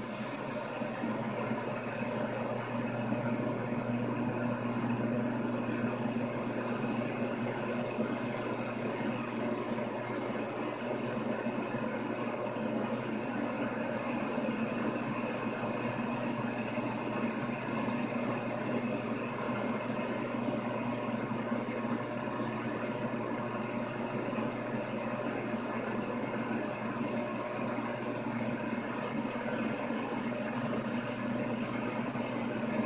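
Receiver static from a 27 MHz CB/11-meter radio's speaker: a steady, muffled hiss of band noise with no stations coming through as the dial is tuned up the band. The band is dead.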